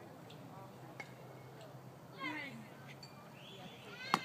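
Faint open-air background with one short, high-pitched shout from a distant voice about two seconds in, and a faint knock about a second in.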